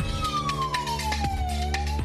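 A siren-like wailing tone in a TV programme's music jingle, sliding slowly down in pitch and then starting back up, over a bass-heavy music bed with rapid sharp ticks.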